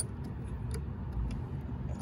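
A few faint clicks of a wrench being worked on the oil drain fitting inside the generator's access opening, over a low steady rumble that swells briefly just past the middle.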